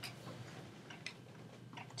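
A clock ticking faintly, about once a second.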